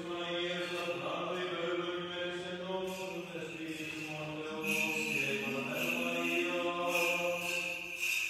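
Byzantine liturgical chant: a voice sings long, slowly moving held notes over a steady lower held note.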